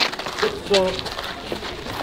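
A brief snatch of a voice over outdoor background noise, with a couple of faint clicks near the start.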